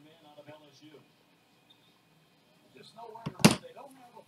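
Faint, low muttered voice, then a single loud, sharp sudden noise about three and a half seconds in.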